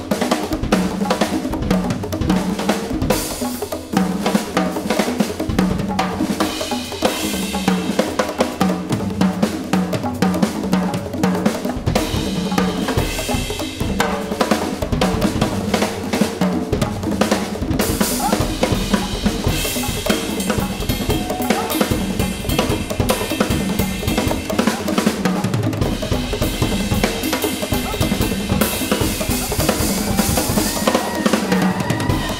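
A percussion trio playing together: hand-played congas, a drum kit with bass drum and snare, and a row of djembes, in a dense, continuous stream of fast strokes. Cymbal wash swells in and out every few seconds.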